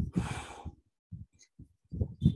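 A short breath or sigh into a close microphone at the start, followed by a few faint low thumps.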